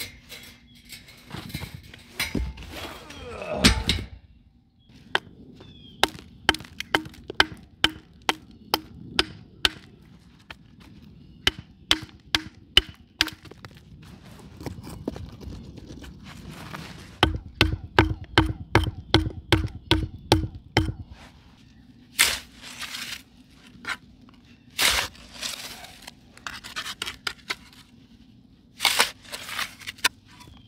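Hard knocks of stone and hand tools as rocks are set and dirt is packed around them. The knocks come in evenly spaced runs of about two to three a second, with a heavier thudding run about two-thirds of the way in and scattered scraping strikes near the end.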